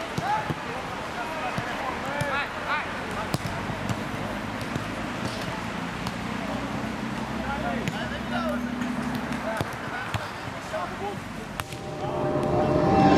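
Players' voices calling and shouting on an outdoor football pitch, with a few separate sharp thuds of a ball being kicked.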